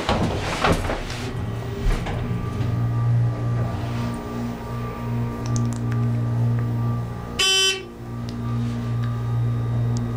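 ThyssenKrupp hydraulic elevator's pump motor humming steadily as the car travels. About seven and a half seconds in, a short electronic beep sounds once.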